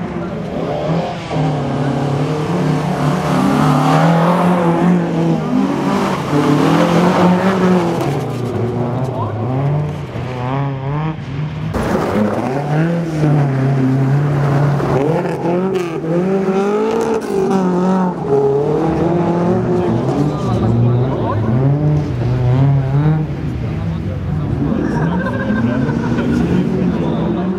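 Classic rally car engines revving hard on a dirt stage, the pitch climbing and dropping again and again through gear changes and lifts off the throttle. The sound changes sharply about halfway through.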